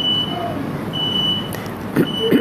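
A high electronic beep repeating about once a second, each beep about half a second long, over steady background noise.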